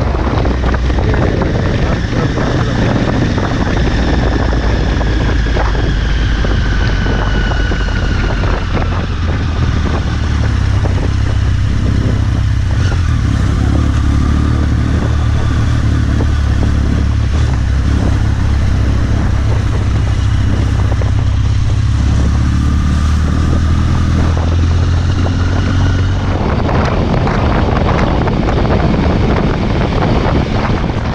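Triumph Speed Triple 1050's inline-three engine running under a rider on the move. Its note falls over the first several seconds as the bike slows, then runs low and steady for a long stretch. Wind noise on the microphone swells near the end as it picks up speed again.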